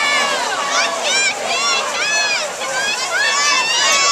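Football crowd yelling and cheering, many voices overlapping in shouts that rise and fall in pitch, with no words coming through clearly.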